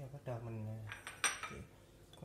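A man's voice held on one low note for most of a second, then two sharp clinks of kitchenware, the second the loudest.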